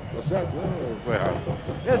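Mostly speech: a male football commentator talking in short phrases, over a steady low background noise.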